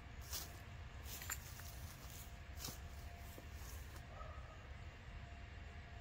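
Boots scuffing and tapping lightly on concrete a few times in the first three seconds, over a faint, steady low outdoor rumble.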